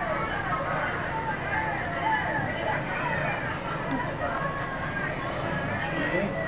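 Indistinct talking in the background throughout, too unclear to make out words.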